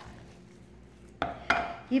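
A wooden spoon stirring mashed potato in a glass dish, with two sharp knocks of the spoon against the glass a little past a second in.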